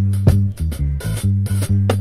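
Reggae dub version, with no vocals: a deep, steady bass line under sharp drum hits.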